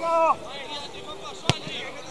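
A short shout at the start, then about a second and a half in a single sharp thud of a football being kicked, the goalkeeper sending the ball upfield.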